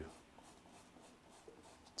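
Near silence, with faint scratching of a paintbrush working oil paint onto the canvas.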